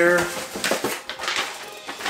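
Cardboard shipping box flaps being pulled open and a paper receipt rustling as it is lifted out, in short scrapes and crinkles.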